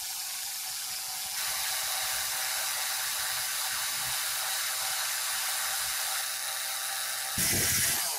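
Cordless drill running steadily with a 5/16-inch bit boring a hole through PVC pipe. It gets louder about a second and a half in and louder again near the end.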